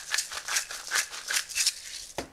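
Pepper mill being twisted by hand, giving a quick run of grinding crunches, about three a second, that stops near the end.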